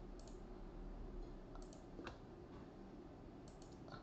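Faint computer mouse clicks, a few scattered single and double clicks, over a low steady hum.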